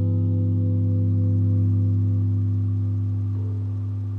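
A final guitar chord left to ring out, fading slowly with no new notes: the closing chord of the song.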